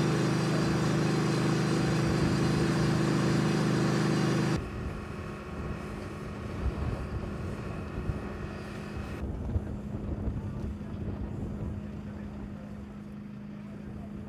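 An ambulance's engine idling close by, a loud, steady hum. About four and a half seconds in, the sound cuts to a quieter, lower engine drone from the emergency vehicles at the scene, with faint scattered noise.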